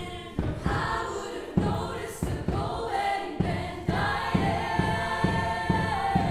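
Women's vocal ensemble singing together in harmony, with a steady low beat underneath.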